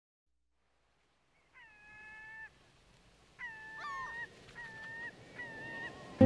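Faint animal calls over a quiet hiss: four drawn-out, steady-pitched cries, the first two about a second long and the later two shorter, the second bending in pitch.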